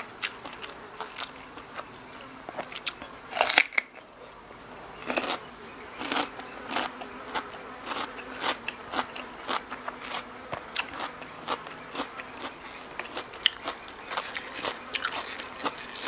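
Close-up eating sounds: a steady run of crisp bites, crunches and chewing as food is eaten by hand, loudest about three and a half seconds in.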